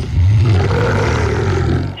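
A long, loud, rasping growl sound effect with a heavy low rumble, one breath-like stretch lasting nearly the whole two seconds.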